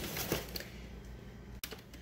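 Light rustling and clicking of food packets and paper packaging being handled on a countertop, busiest in the first half second and then thinning out.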